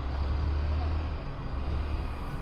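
Motor scooter on the move: a steady low rumble of the scooter running and wind on the microphone.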